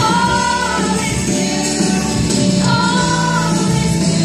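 Loud music with a group of voices singing together, holding two long notes of about a second each, one at the start and one about three seconds in.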